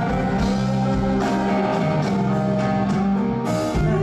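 Live band music with a stage keyboard: the instrumental close of a slow ballad, chords held over a light beat, with no singing.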